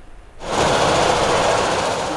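Steady outdoor noise of a river launch terminal with a mechanical rattle, starting suddenly about half a second in.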